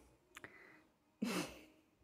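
A person's short breathy sigh about a second and a half in, after a faint click near the start; otherwise quiet.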